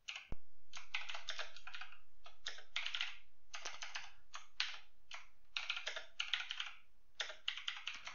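Typing on a computer keyboard: quick bursts of keystrokes with short pauses between them.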